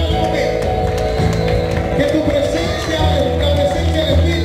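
Live worship music with a band and a steady bass line, a man's voice singing over it through the microphone, and the congregation clapping along.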